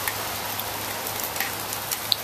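Steady rain falling as an even hiss, with a couple of sharper drop hits about a second apart.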